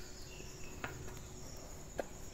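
Faint background of insects calling steadily, with a couple of soft clicks from footsteps.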